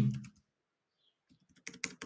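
Computer keyboard keystrokes: a quick run of clicks in the second half as the text in a search box is deleted.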